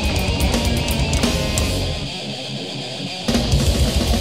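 Death/thrash metal instrumental passage with distorted electric guitars, bass and fast drums. About two seconds in, the drums and bass stop for just over a second, leaving the guitar, and then the full band comes back in.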